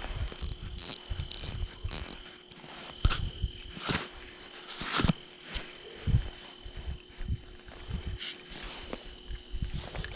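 Small spinning reel on an ice-fishing rod being cranked in several quick bursts as a crappie is reeled up through the ice hole, followed by scattered knocks and rustles of handling. A steady faint high whine runs underneath.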